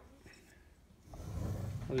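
Quiet room, then about a second in a soft, muffled handling noise as the blender's tamper is picked up.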